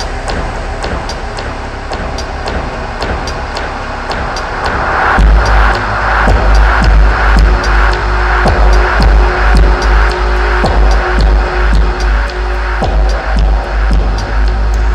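Dark, heavy electronic music played live through a club sound system, with a steady ticking beat in the highs. About five seconds in a deep, pulsing sub-bass drops in and the music gets louder.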